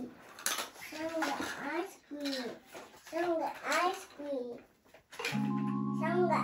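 A small child babbling and vocalizing in short bursts, without clear words. About five seconds in, a simple electronic tune of steady, even notes starts playing.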